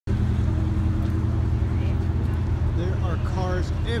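A steady, low engine hum, as from a car idling, with people's voices joining about three seconds in.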